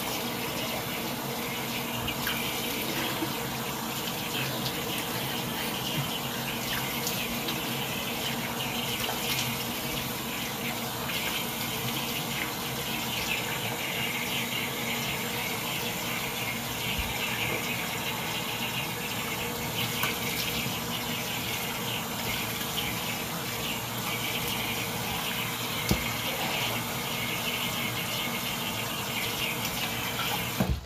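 Tap water running steadily into a sink as a dried clay face mask is rinsed off, with a few small splashes.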